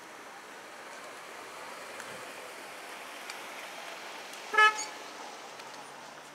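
A car horn sounds one short toot, about a fifth of a second long, about four and a half seconds in. Under it runs a steady background hiss.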